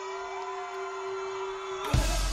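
Live pop concert music in a breakdown: a single held sustained note with no drums or bass. Near the end a loud hit brings in the full band with a heavy bass beat.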